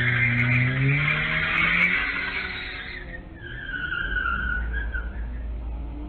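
A car engine revving, its pitch rising over the first two seconds, against a harsh screech. About three seconds in comes a wavering high squeal like tires scrubbing, and a low rumble follows near the end.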